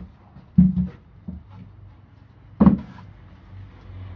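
Two dull knocks of a wooden box being handled on a workbench, about two seconds apart, over a low steady hum.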